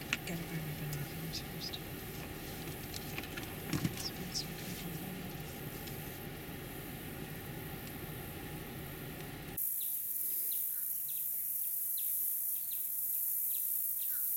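A vehicle idling with a steady low hum and a few faint bird chirps. About ten seconds in, the sound cuts abruptly to an outdoor lakeside scene: a steady high-pitched insect drone with birds chirping now and then.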